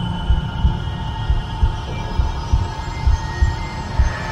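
Soundtrack bed of low, heartbeat-like thuds, about two to three a second, over a steady droning hum.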